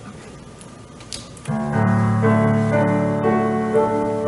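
Quiet room tone, then about one and a half seconds in a recorded Yamaha Clavinova accompaniment starts: sustained piano-like chords over held low bass notes, with a few moving higher notes.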